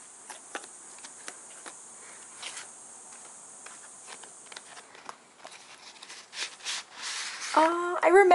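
Paper handling: string being unwound from the button closure of a kraft-paper envelope and a notebook slid out, as light rustles and small scattered clicks, busier near the end.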